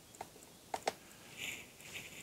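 Quiet room with a few faint clicks, two of them close together under a second in, and a soft breath-like hiss shortly after.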